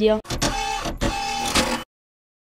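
A short edited transition sound effect for the news logo: a noisy swish with a held tone running under it. It lasts about a second and a half and cuts off suddenly into dead silence.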